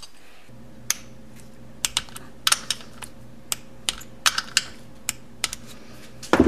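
Irregular light metallic clicks from the starter motor's 6 mm mounting bolts and hand tools against the aluminium engine case as the bolts are fitted. A steady low hum sets in about half a second in and runs beneath them.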